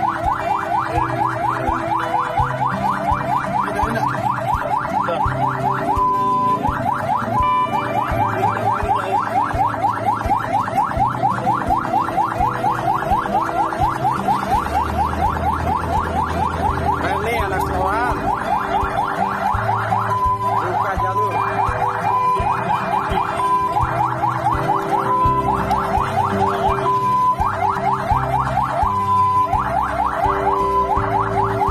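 Fire engine siren in yelp mode, heard from the truck's own cab: quick rising sweeps repeat several times a second, broken now and then by a short steady held tone.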